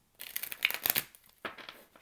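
Tarot cards being handled on a wooden table: a quick run of crisp rustles and clicks in the first second, then a couple of lighter taps.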